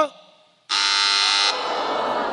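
Game-show wrong-answer buzzer: a loud buzzing tone that starts suddenly about two-thirds of a second in, holds for about a second and then fades away. It signals that the contestant's price guess was wrong.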